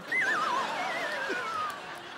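A horse whinny: one quavering call falling in pitch over about a second and a half, over a light background hiss.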